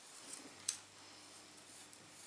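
Faint scratching and crinkling of thin gold aluminium foil as a pencil point presses a design into it, with one sharper click about two-thirds of a second in.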